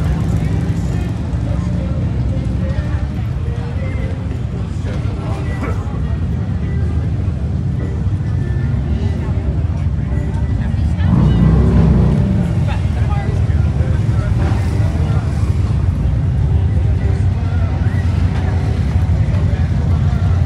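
Motorcycle engines running steadily amid crowd chatter, with one engine revving up and back down, loudest about eleven seconds in.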